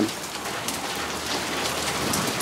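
Steady rain mixed with small hail, an even hiss of falling precipitation with no distinct single strikes.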